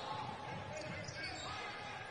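Basketball being dribbled on a hardwood court, over a low murmur of arena crowd noise.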